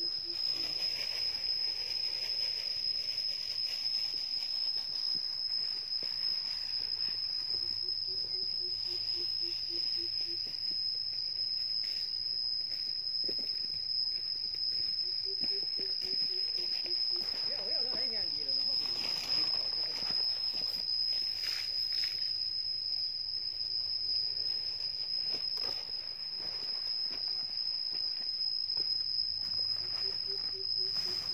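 An insect's steady high-pitched whine runs without a break. Every several seconds there is a low run of quick pulsed calls from an animal.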